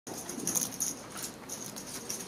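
A cloth rubbing over a clear trophy as it is wiped, in a few short strokes in the first second or so.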